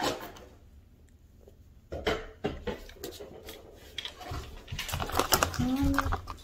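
Handling of a paper-wrapped plush toy and its plastic packaging: scattered light taps, clicks and rustling that start about two seconds in after a brief quiet, with a short bit of voice near the end.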